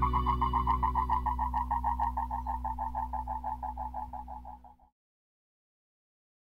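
Closing tail of a reggae-rock song: a fast-pulsing high tone, about eight pulses a second, drifts slowly down in pitch over a steady low drone. It fades and cuts off about five seconds in, leaving silence.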